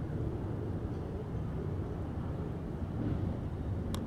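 Steady low background rumble with no clear source, and a single short click near the end.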